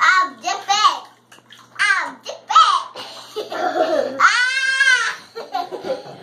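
Laughter and high-pitched, babbling voice sounds in short bursts. About four and a half seconds in comes one long squeal that rises and falls.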